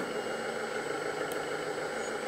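Steady engine-like idling hum from the 1/14 LESU DT60 RC hydraulic bulldozer standing still with its systems powered, even and unchanging.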